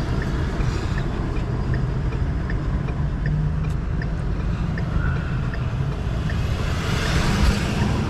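A motorhome engine idling with a steady low rumble, heard from inside the cab, while a turn-signal indicator ticks about three times every two seconds. A brief hiss swells up near the end.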